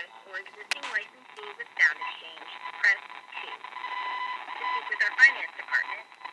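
A phone call's audio coming faintly over a smartphone's speakerphone, thin and narrow like a phone line: scraps of a voice too faint to make out, with a steady held tone near the middle.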